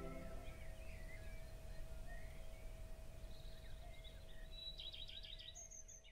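Ambient music stops about half a second in, leaving a low steady rumble of outdoor ambience with birds chirping sporadically. A quicker run of high chirps follows in the second half.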